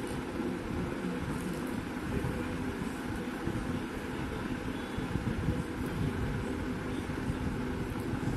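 Steady low background rumble with a faint hum, like distant traffic or a running fan.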